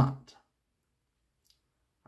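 The tail of a spoken word, then near silence broken only by one faint, brief click about a second and a half in.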